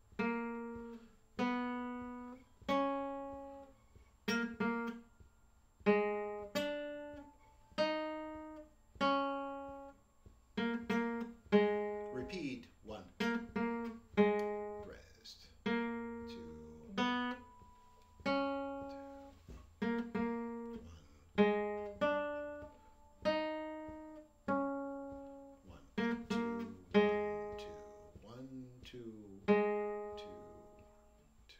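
Nylon-string classical guitar played solo: plucked notes and chords about once a second, now and then two in quick succession, each ringing and dying away.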